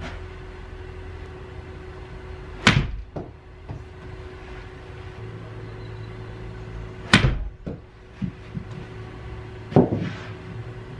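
Two sharp strikes about four and a half seconds apart: a 7-iron hitting a Chrome Soft golf ball into a simulator's impact screen, each with a fainter knock about half a second after. A duller knock comes near the end, over a steady hum from the simulator bay's equipment.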